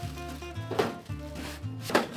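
Two knocks of items set down in a metal kitchen cabinet, one a little under a second in and a louder one near the end, over soft acoustic-guitar background music.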